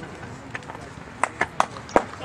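Faint voices of players calling out on a ballfield. In the second half come four or five sharp, irregular claps; the last one, near the end, is the loudest.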